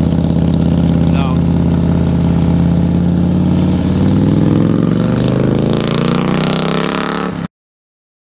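Motorcycle engine running, its engine speed rising over the last few seconds as it revs up. The sound cuts off abruptly near the end.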